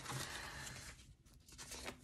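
Faint rustling of paper envelopes being handled and opened, dying away about halfway through, with a little more rustle near the end.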